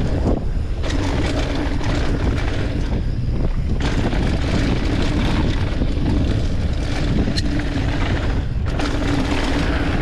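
Wind buffeting a mountain bike's camera microphone at speed, with knobby tyres rolling and rattling over a dirt trail. A steady buzz runs underneath, dropping out briefly twice.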